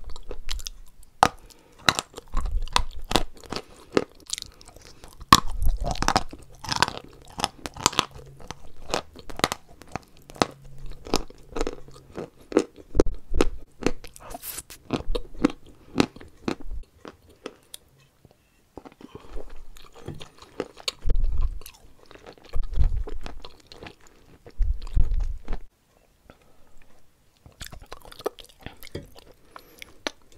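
Close-miked biting and chewing of dry white mineral chunks: dense, crisp crunching for about the first half, a short pause, then slower chewing with low mouth thuds and fainter crunches near the end.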